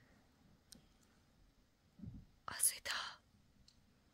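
A person whispering a brief phrase about two and a half seconds in, over quiet room tone.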